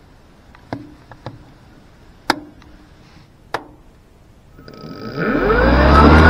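Switches clicking a few times, then an electric direct-drive mower blade motor spinning up: a whine that rises in pitch with a rush of air and grows loud near the end.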